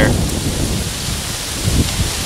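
Wind buffeting the microphone outdoors: a low, uneven rumble under a steady hiss.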